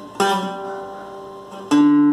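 Acoustic guitar notes plucked to demonstrate a lower mordent, G with a quick dip to F sharp. One note rings and fades from about a fifth of a second in, then a louder note is struck near the end.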